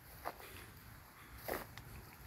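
Faint footsteps on a grassy woodland path: two steps over a low, steady rumble.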